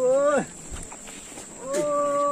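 Men's long, drawn-out hollering calls, several voices at different pitches, as they drive a mithun along on ropes. One call dies away just after the start, and after a short lull another begins near the end.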